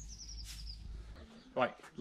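A small songbird singing a quick run of high chirps that falls in pitch, over a steady low outdoor rumble that cuts off abruptly about a second in; a man starts speaking near the end.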